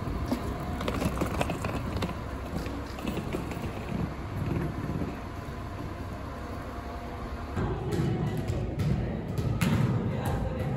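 Suitcase wheels rolling and clicking over concrete paving amid steady outdoor background noise. About two and a half seconds from the end the sound changes to a reverberant indoor room with football kicks and thuds and voices.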